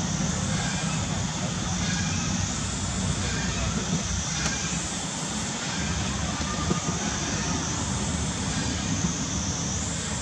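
Steady background noise: a low rumble with an even hiss over it, with faint voices far off.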